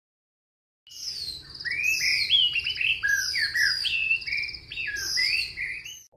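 Birds chirping and singing, with many quick, overlapping high chirps that slide up and down in pitch, starting about a second in.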